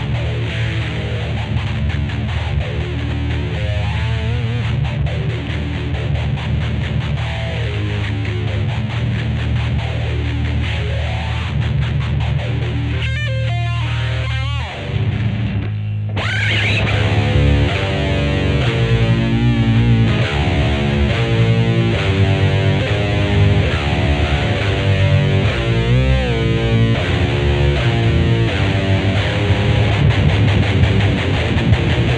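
Instrumental death metal played on distorted electric guitars, with no drums. A riff of held low chords gives way about halfway through, after a brief thinning of the sound, to a new riff.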